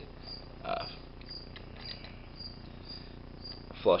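Steady high-pitched chirping, repeating evenly about two to three times a second, like an insect.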